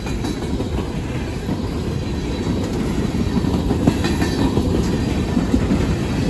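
Empty coal hopper cars rolling past close at speed: a steady, loud rumble of steel wheels on rail with a clickety-clack rattle.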